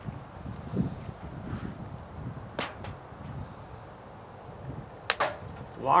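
Sharp metal clicks from adjusting the jaws of a hand-lever belt-lacing machine for clipper belt links: one click in the middle and two close together near the end, over low handling noise.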